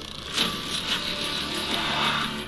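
Film trailer sound design: a sudden rushing whoosh about half a second in that runs on as a dense noisy swell, with music underneath.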